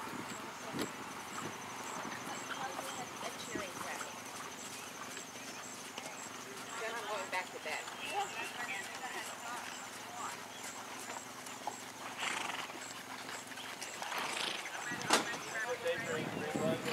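Hoofbeats of a horse trotting on the soft sand footing of a dressage arena, with faint voices in the background and a single sharp knock near the end.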